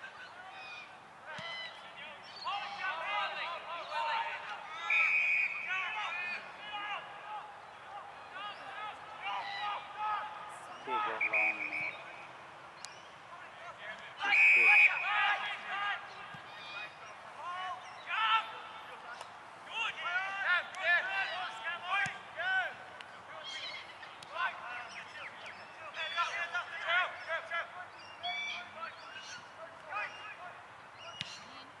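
Distant shouts and calls from Australian rules footballers and onlookers across the ground, with a few short, piercing held notes rising above them.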